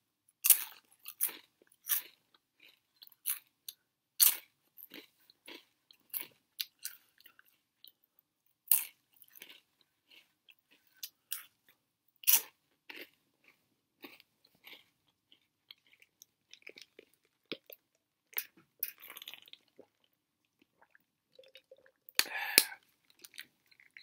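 Crunchy veggie straws being bitten and chewed close to the microphone: a run of sharp, irregular crunches with short pauses between bites.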